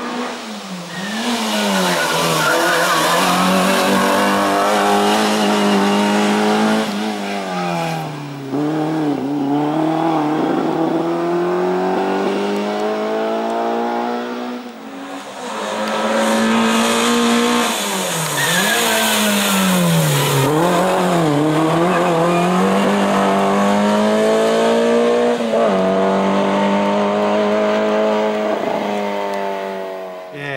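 Race car engine running at high revs on a slalom hill climb, its pitch dropping and climbing again several times as the car brakes and accelerates through the corners.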